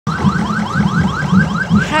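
Electronic siren sounding a fast yelp, a rising sweep repeated about four times a second, over a low pulsing sound.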